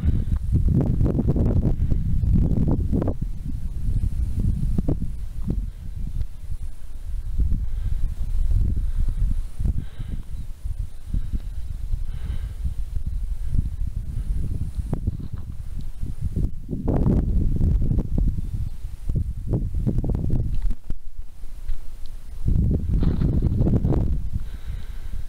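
Wind buffeting a camera microphone: a loud, low, gusty rumble that rises and falls unevenly.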